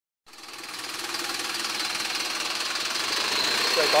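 Diesel engine of an Optare single-deck minibus running as the bus pulls away, with a thin, steady, high-pitched whine over the engine note.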